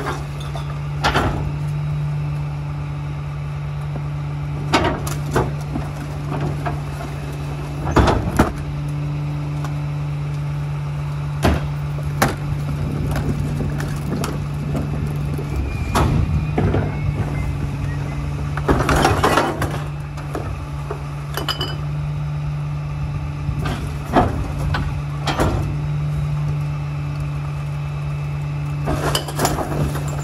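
Diesel engine of a Mack rear-loader garbage truck idling steadily, with irregular clatters and knocks as recyclables are tipped from carts into the rear hopper. A longer rattling spill comes about two-thirds of the way through.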